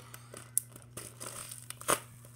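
Clear plastic zip-top bag crinkling and clicking as it is handled and its seal pressed shut, with a sharp snap about half a second in and a louder one near the end.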